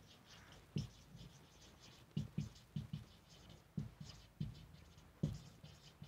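Marker pen writing on a whiteboard: a series of short, irregular scratching strokes, each with a light tap of the tip against the board.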